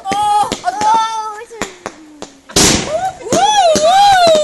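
Home fireworks going off: sharp cracks and a loud bang about two and a half seconds in, with long high whistles that bend up and down.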